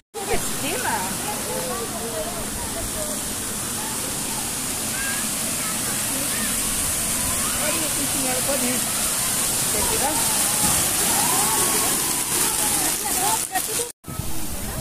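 Steady hiss and splash of water falling from the spouts of a water-park splash structure, with many indistinct voices of people in the background.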